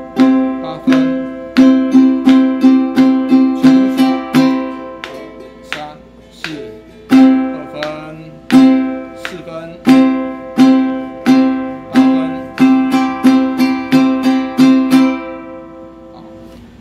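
Ukulele strumming chords in a counted beginner's strumming exercise on note values: even quarter-note strums, about three a second. After a short break about five seconds in, the strums come back and get quicker toward the end.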